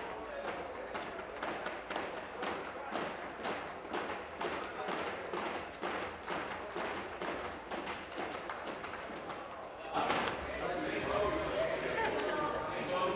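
Steady rhythmic knocking, about three strokes a second, under a murmur of voices in a large hall. About ten seconds in it gives way to louder chatter of many people.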